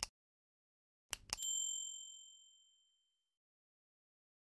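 Mouse-click sound effects, a quick double click at the start and another about a second in, followed by a bright bell ding that rings out and fades over about a second and a half. These are the stock sounds of a subscribe-button animation, clicking 'subscribe', 'like' and the notification bell.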